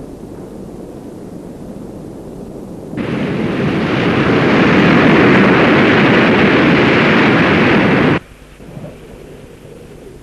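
A low rumble, then about three seconds in a loud, sudden roar of heavy breaking waves that cuts off abruptly about five seconds later, leaving a low rumble.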